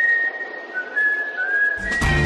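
A few short whistled notes, each a thin single pitch, with a small upward slide in the second half.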